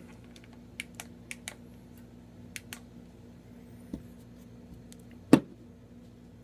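Light scattered clicks and ticks of a small Allen wrench and hands handling a pistol, with one much louder sharp click about five seconds in.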